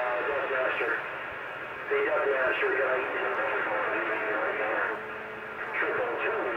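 Voices coming through a CB radio speaker over steady static hiss, thin and muffled, with short quieter gaps between transmissions.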